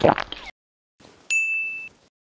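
A short bright ding: one steady high tone that comes in sharply a little past the middle and cuts off after about half a second. Before it, a run of quick crackly clicks ends within the first half second.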